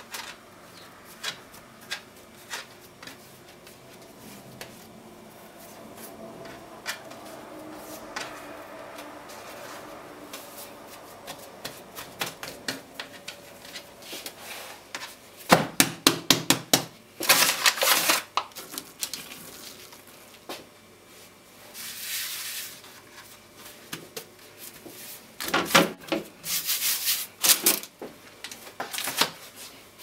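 Hands folding a sheet of laminated croissant dough on a floured worktop, with soft rubbing and small ticks at first. In the second half come several loud bursts of rustling as baking paper is handled around the folded block.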